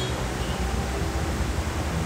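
Steady background hiss with a low hum beneath it: the room tone of the recording.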